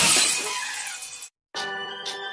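Edited sound effects: a noisy crash dies away over about a second, the audio cuts to silence briefly, then a chiming, ringing tune starts just before the end.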